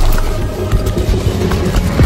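A loud, deep rumble with a few short crackles, mixed with music; it swells suddenly just before the start and again at the end.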